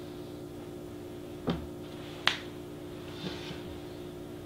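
Two sharp clicks or knocks, under a second apart, over a steady low electrical hum, with a softer knock about three seconds in, as a person moves at a podium.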